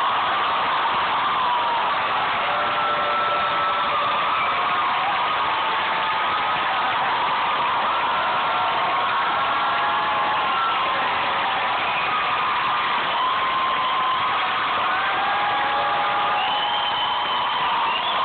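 Concert audience applauding and cheering loudly, with scattered whoops and whistles rising above the steady clapping.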